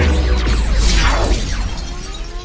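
Loud crash of glass shattering, with a deep rumble underneath that fades slowly, as a film sound effect. Faint music plays behind it.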